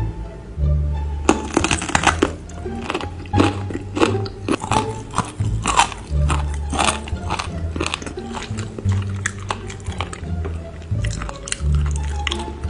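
Close-miked biting and chewing of chicken feet, a dense run of sharp crackling clicks starting about a second in, over background music with low bass notes.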